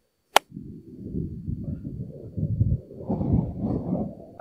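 A golf club strikes a ball off an asphalt cart path with a single sharp crack. Right after it comes a low, uneven rumble of wind on the microphone.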